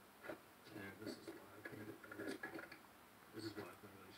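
Faint, indistinct man's voice talking, with a single click about a quarter second in.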